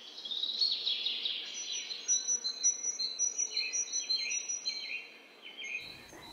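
Songbirds singing: many overlapping high chirps and short gliding notes, with a rapid run of repeated high notes through most of the stretch.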